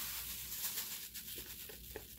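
Sheet of paper rustling as it is lifted and tilted, with loose table salt sliding off it in a soft, steady hiss and a few faint ticks.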